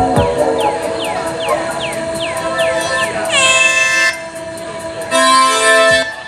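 Live electronic synth music: short downward-sweeping blips repeat about two or three times a second over a held drone, after a few pitch-dropping bass thumps at the very start. Two loud, buzzy, horn-like synth chords cut in, the first about three seconds in and the second near the end.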